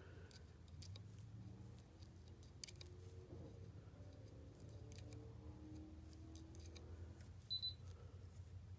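Near silence: faint room hum with a few soft ticks, and a short high beep near the end.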